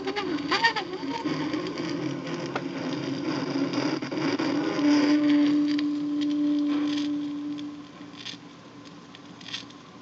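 A 45 rpm single playing out on a 1950s Dean portable record player, with surface crackle from the vinyl. A held note sounds from about five to eight seconds in. After that the sound drops to quiet groove noise with a faint click about once per turn of the record, the needle riding the run-out groove.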